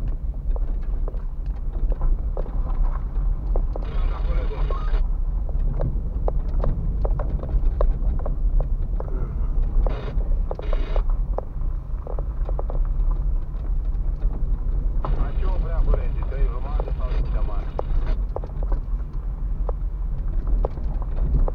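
A car driving over a rough dirt and gravel track, heard from inside the cabin: a steady low rumble of tyres and suspension, with frequent small clicks and knocks from stones under the tyres.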